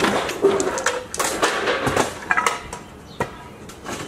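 Wooden furniture clattering and knocking as it is thrown into the back of a truck: a run of sharp knocks and scrapes through the first two and a half seconds, then a single knock a little after three seconds.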